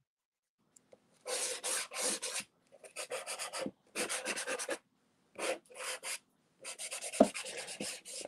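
Soft pastel being rubbed in quick back-and-forth strokes across a textured pastel board, a scratchy rasp in five bursts of about a second each with short pauses between.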